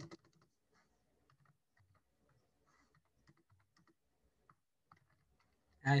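Typing on a computer keyboard: faint, irregular key clicks, with a louder pair of clicks right at the start.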